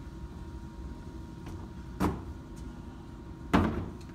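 A wheeled plastic trash cart rolled along a hard floor with a steady low rumble, and two knocks about a second and a half apart, the second louder.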